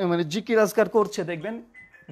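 A man speaking Bengali, then near the end a pause with a brief, faint, steady electronic beep.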